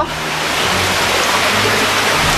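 Mountain stream running among boulders close by, a steady rush of water.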